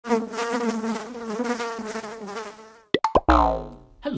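Mosquito buzzing in a steady, slightly wavering whine for nearly three seconds. The buzz cuts off, then come a few sharp clicks and a heavy thud, and a falling tone that fades away.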